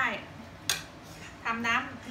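A metal utensil clinks once, sharply, against dishware about two-thirds of a second in.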